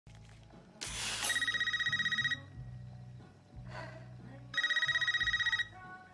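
A landline telephone rings twice with an electronic warbling trill, each ring about a second long and the two about three seconds apart, over a low steady film-score drone.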